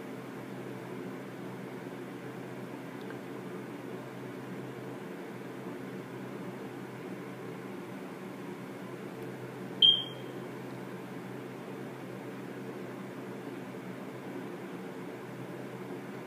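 Steady low hum with a single short, high-pitched electronic beep about ten seconds in.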